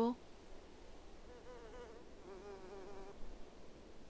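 A flying insect buzzing faintly in two short stretches, each about a second long. The second stretch is a little lower in pitch than the first, with a slight waver throughout.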